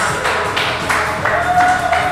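Small comedy-club audience laughing and clapping.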